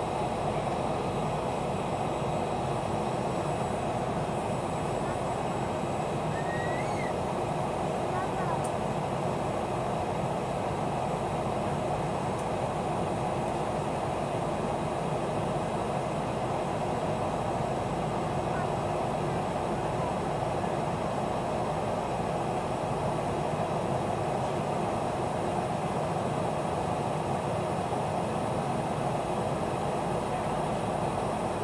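Steady jet airliner cabin noise in flight: an even, unbroken rush of engine and airflow sound heard inside the cabin.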